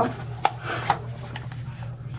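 Handling noise from a bathroom scale being moved about by hand: two sharp clicks about half a second apart, with rubbing and scraping between them.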